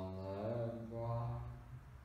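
A man's voice holding one long, low, chant-like tone that bends slightly in pitch and fades out before the end.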